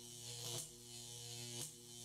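Electrical buzz and hum of fluorescent tube lights, with a brief crackle twice, about a second apart, as the tubes flicker.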